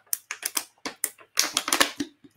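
Drinking from a thin disposable plastic water bottle: the plastic gives an irregular run of short crackling clicks, thickest near the end.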